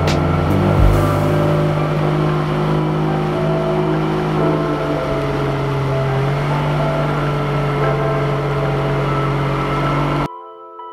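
Outboard motor of an aluminium tinny running steadily at speed through choppy water, with the rush of water and wind over it. There is a low thump about a second in.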